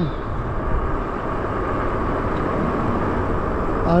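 Steady wind and road noise from riding a Lyric Graffiti e-bike along a street, an even rush with its weight in the low end and no single event standing out.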